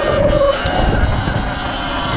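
Wind buffeting the camera microphone as a Sur-Ron Light Bee X electric dirt bike rides along, with a faint steady whine from its electric drive.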